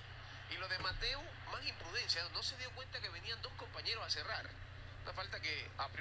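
A match commentator's voice, quieter than the surrounding talk, narrating the football footage as it plays, over a low steady hum.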